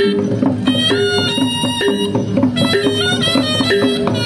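Javanese Reog Kendang accompaniment music: a reed pipe repeats a short melodic phrase of held notes over kendang drum strokes.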